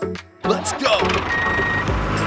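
Music giving way, about half a second in, to a steady vehicle engine sound, with one short high beep near the middle.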